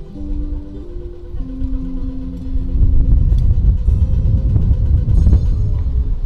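Music of held, stepping notes, joined about three seconds in by a loud low rumble of city traffic that becomes the loudest sound.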